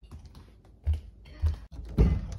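Quiet kitchen handling noise: faint small clicks and two soft low thumps about half a second apart, as someone walks from the fridge to a wooden cabinet.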